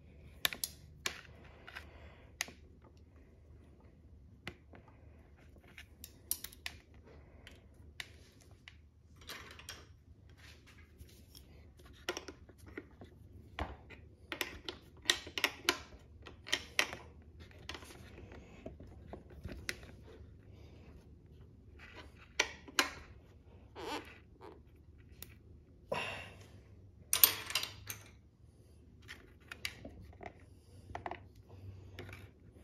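Irregular small clicks and light taps from hands working the front brake lever, brake-light switch and its wiring on a motorcycle handlebar, the loudest cluster near the end, over a low steady hum.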